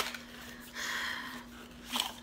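Sharp clicks of a small plastic bottle cap being handled, at the start and near the end, with a short breathy exhale about a second in, over a faint steady hum.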